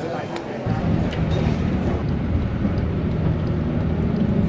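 Steady low rumble of a moving car, heard from inside the cabin: road and engine noise that starts suddenly less than a second in.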